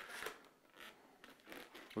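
Faint rubbing and squeaking of a latex twisting balloon being handled and bent into shape, a few brief scratchy sounds.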